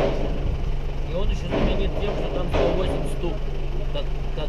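A vehicle's engine idling steadily while stationary, heard from inside the cabin, with low voices in the background.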